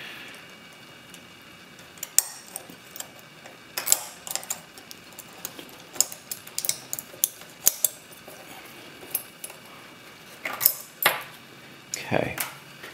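Small, sharp metal clicks and taps as a metal probe picks at the levers inside an opened Sargent & Greenleaf mailbox lock and lifts them out. The ticks come irregularly, in small clusters around the middle and again near the end.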